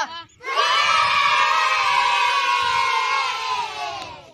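A crowd of voices shouting and cheering together. It starts abruptly about half a second in, holds loud and steady, then fades near the end.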